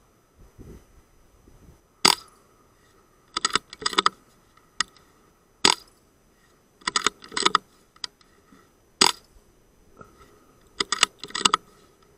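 Moderated Walther Rotex RM8 PCP air rifle fired three times, each shot a single sharp report about three and a half seconds apart. After each shot there is a quick run of metallic clicks as the bolt is pulled back and pushed forward, cocking the gun and indexing the next pellet in the rotary magazine.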